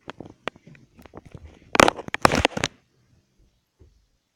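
Handling noise from a handheld camera: a run of clicks, knocks and rubbing as it is moved about and covered, loudest in a cluster about two seconds in.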